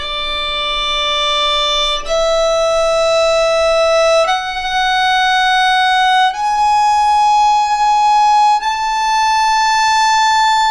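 Solo violin playing an A major scale slowly upward, bowed notes of about two seconds each stepping up through D, E, F sharp and G sharp to the high A, which is held.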